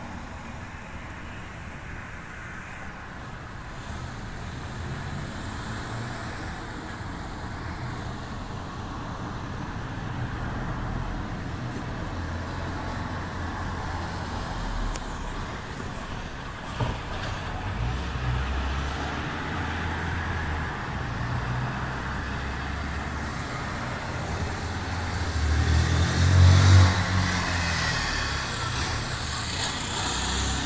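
Road traffic: a steady hum of vehicles, growing as one vehicle passes, loudest near the end, with a few faint clicks in the middle.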